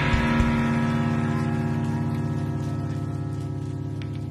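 A live rock band's electric guitar and bass hold one chord, letting it ring and slowly fade, with a few low drum hits in the first half second.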